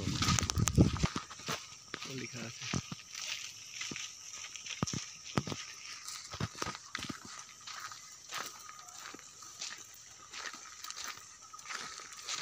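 Footsteps on a gravel path: irregular sharp crunches and clicks over a steady high-pitched background hum, after a brief voice in the first second.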